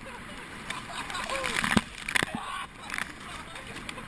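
Oar blades splashing and slapping through choppy water alongside a rowing boat, with two sharp hits about two seconds in.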